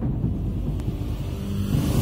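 Deep rumbling sound effect under a TV channel's animated logo intro, steady and heavy in the bass, swelling slightly near the end as the intro music comes in.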